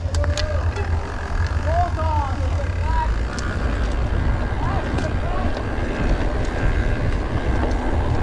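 Mountain bike rolling along a dirt forest trail, covered by a heavy, steady low rumble of wind on the camera microphone, with a few sharp clicks and rattles from the bike.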